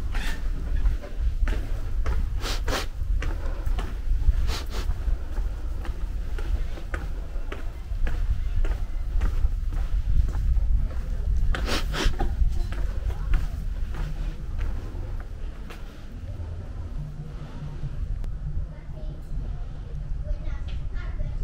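Street ambience heard while walking: a steady low rumble with a few short sharp knocks scattered through it, and faint voices in the background.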